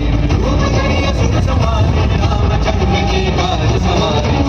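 Loud show soundtrack music played over a large outdoor sound system, with heavy bass and a voice line over it.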